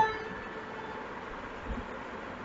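Electric guitar: one picked melody note at the start rings on and fades through a pause in the tune, with a faint low thump near the end.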